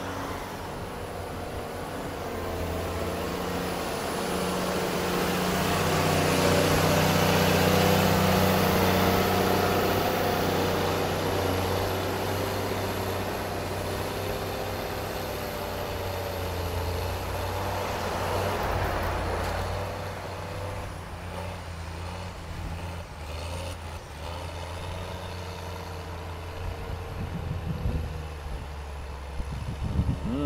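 Motor grader's diesel engine working under load as its blade pushes sandy soil, with a scraping hiss of soil. The sound swells louder for several seconds about a quarter of the way in, then fades as the machine moves away.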